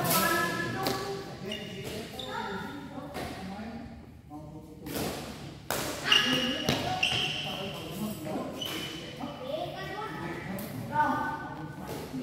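Badminton rally: a series of sharp hits of rackets on a shuttlecock at irregular intervals, echoing in a large hall, mixed with people's voices calling out.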